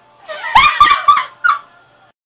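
Women laughing: a high-pitched burst of several short squealing pulses that dies away about one and a half seconds in.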